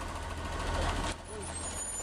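Street traffic noise with a steady low rumble from heavy road vehicles, dipping briefly a little past a second in.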